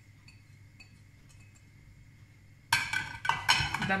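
Glass dishes clinking: a few sharp, ringing knocks of glass on glass come near the end, after a couple of seconds of near quiet.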